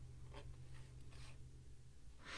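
Faint rustle and scrape of tarot cards sliding against each other as they are handled in the hands, a few soft brushes over a low steady hum.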